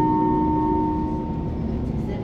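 Two-note passenger-information chime of a city bus, the second note ringing out and fading away within about a second and a half, over the bus's steady low rumble.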